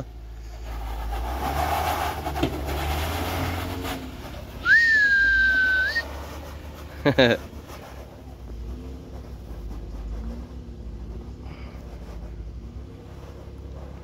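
Off-road Jeep engine running under load at low speed on a rock climb, louder over the first few seconds and then settling to a low rumble. About five seconds in, a sharp, steady whistle lasts just over a second, and a brief shout follows soon after.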